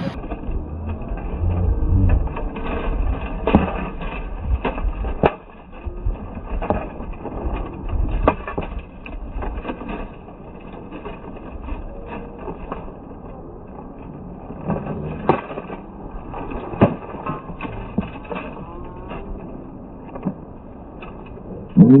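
Slowed-down sound of an armored sword fight: knocks and clashes of the weapons, deepened and drawn out, at irregular intervals over a low rumble.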